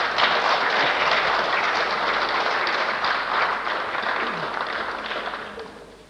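Applause from the deputies' benches in a parliamentary chamber, heard on an old archival recording, dying away over about six seconds.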